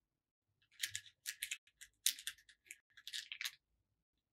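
Small plastic beads clicking and rattling against each other and the plastic compartment box as a finger stirs through them, in three or four quick clattering runs that stop shortly before the end.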